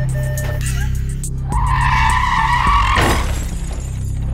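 A car's pre-collision warning beeping in quick short tones, then tires screeching for about a second and a half, cut off by a sudden crash about three seconds in, over background music.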